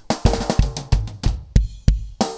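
Rock drum kit loop playing back, kick and snare hits in a steady beat. The snare is doubled by a copy of itself pitched down about a minor third, which fills it out.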